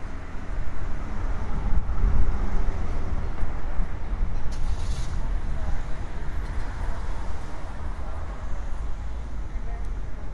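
City street traffic: vehicles running and passing on the road, with a steady low rumble and a short hiss about five seconds in. Passers-by's voices mix in.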